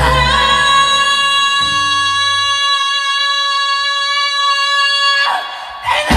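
A female vocalist holds one long high note, rising slightly into it, while the live band drops away beneath her. The note ends about five seconds in, followed by a brief lull before the full band crashes back in.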